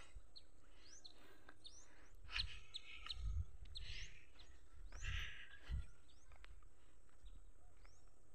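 Birds chirping faintly in short, rising calls scattered throughout, with a few low rumbles in the middle.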